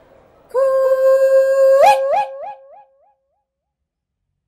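A long "coo-ee" call: a held "coo" that rises sharply into "ee" about two seconds in, then echoes away three or four times, each fainter, gone by about three seconds.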